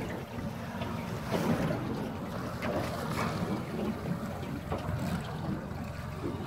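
Wind buffeting the microphone and sea water washing around a small boat, with a steady low hum underneath.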